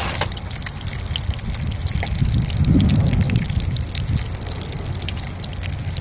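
Whole fish frying in oil in a steel pan over a small wood-burning stove: a steady sizzle with fine irregular crackles, over a continuous low rumble.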